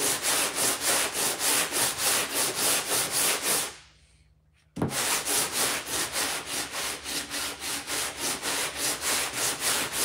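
36-grit sandpaper rubbed back and forth by hand over hardened Bondo body filler, about three strokes a second, cutting off the glaze on the filler's surface. The strokes break off for about a second near the middle, then resume.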